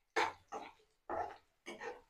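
Steel ladle scraping and knocking against a kadai while sautéed vegetables are stirred in oil: four short strokes about half a second apart, each dying away quickly.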